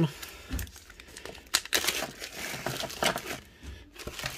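Clear plastic zip-top bag crinkling and crackling irregularly as a hand pulls its seal open and reaches inside.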